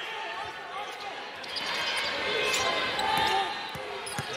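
A basketball dribbled on a hardwood court over arena crowd noise, which swells about halfway through.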